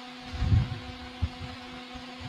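Quiet room tone through a stage microphone: a steady low electrical hum with soft low rumbles and one brief click a little after a second in.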